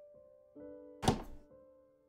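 Slow, soft piano music, a new note sounding every second or so. A single sharp thunk cuts in about a second in and is the loudest sound.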